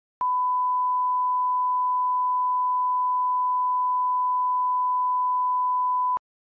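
Broadcast line-up tone: a single steady 1 kHz reference tone of the kind that goes with colour bars. It switches on with a click just after the start and holds one pitch at an even level.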